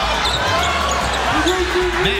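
Basketball game sound from a hardwood court: the ball bouncing and sneakers squeaking, with several short squeaks sliding up and down in pitch in the second half, over arena crowd noise.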